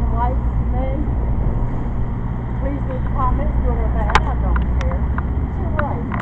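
Steady low rumble of road traffic going by, with faint voices and a few sharp clicks in the second half.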